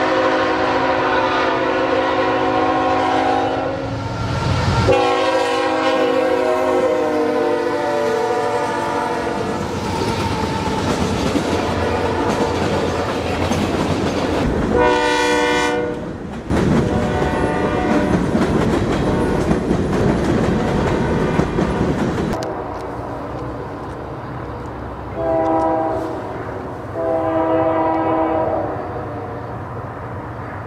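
Freight locomotive air horns: two long multi-note horn blasts in the first ten seconds, then a short blast about fifteen seconds in from a Nathan K3HA three-chime horn. A freight train then rolls past with its wheels clacking over the rails, and near the end a train further off gives several shorter, fainter horn blasts.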